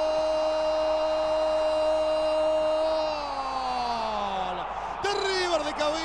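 Football commentator's long goal cry, a drawn-out "gol" held on one high note for about three seconds, then sliding down in pitch and dying away. Fast, excited commentary starts again near the end.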